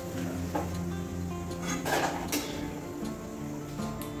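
Background music with steady held notes, over a few short clinks of a metal spoon against a steel kadai and a plastic container, the two loudest about two seconds in.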